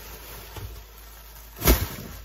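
A black plastic garbage bag being handled close to the microphone: low rustling, then one loud, short brush or thump near the end as the bag is pushed against it.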